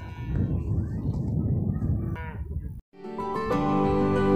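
Low, uneven rumble of wind buffeting a clip-on microphone, with a brief vocal sound just after two seconds. After a short dropout near three seconds, calm instrumental background music with sustained notes starts.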